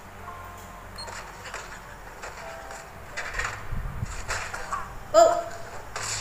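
An anime episode's soundtrack playing back quietly: scattered clicks and knocks, with a low thud about four seconds in.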